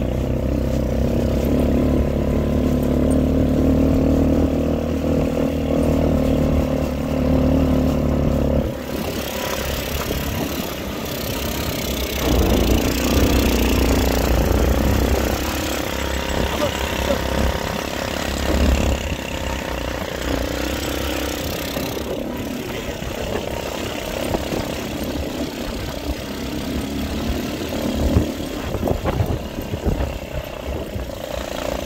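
A motor running steadily with a low hum, which stops abruptly about nine seconds in. After that there is uneven rustling noise, with a few sharper knocks near the end.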